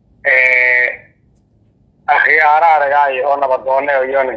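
A man's voice in a chanted, half-sung delivery. About a quarter second in comes a short note held on one steady pitch, then a pause of about a second, then from about two seconds in a long unbroken line with a wavering pitch.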